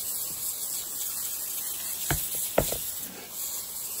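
Hand pump sprayer misting water onto worm-bin bedding in a steady hiss, wetting the bin so it won't dry out. Two light knocks come about two seconds in.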